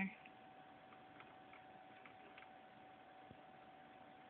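Near silence: a faint steady tone, with a few scattered faint ticks as an African red-bellied parrot moves about on the wood of a desk's keyboard drawer.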